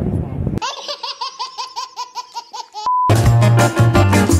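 An edited-in laugh sound effect: a high-pitched laugh of quick, even 'ha' syllables, about five a second, lasting about two seconds on a silent background. It is followed by a short steady beep, then loud music with a heavy bass line cuts in.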